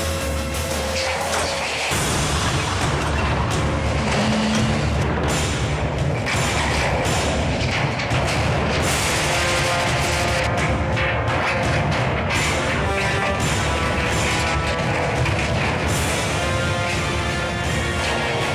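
Dramatic background music over repeated booms and crashes of steel being crushed and torn, as hydraulic demolition shears with Hardox 600 knives cut up a Hardox 450 wear-plate container.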